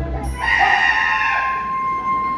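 Stage show sound: one long, steady high note, most likely a performer's voice, begins about half a second in and is held, with show music beneath it.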